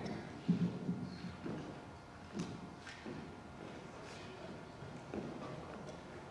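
Faint footsteps and a few scattered light knocks on a concert stage, in a quiet hall before the band starts playing.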